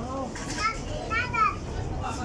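A young child's high-pitched voice: a few short, rising-and-falling vocal sounds in the middle second, over a low, steady background hum.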